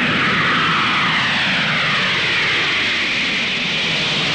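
Boeing 747's jet engines at takeoff power as it lifts off and climbs away: a loud steady roar with a whine that falls slowly in pitch.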